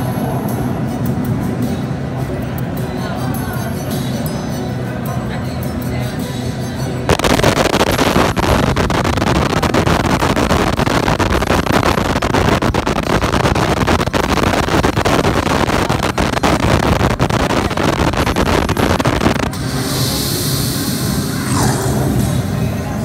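Sphinx 4D slot machine's sandstorm bonus sound effects through its speakers: game music for the first seven seconds or so, then a sudden loud rushing, wind-like noise for about twelve seconds. Near the end it drops back to quieter music with a bright, shimmering sound as the bonus round begins.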